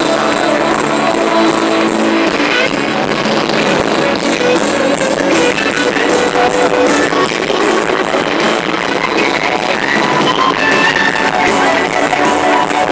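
Live band playing loud, continuous music with guitars over a stage sound system, picked up from within the crowd.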